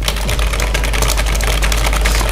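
Fast, continuous typing on a computer keyboard: a rapid clatter of keystrokes, many per second.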